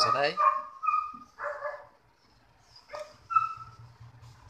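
A dog barking in short yips, three times, with a sharp click just before the last one.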